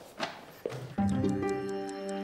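Short transition jingle starting about a second in: held notes with a quick, even ticking over them, about five ticks a second.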